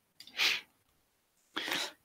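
A man's breath into a close microphone, twice: a short sharp intake early on and another just before he speaks again.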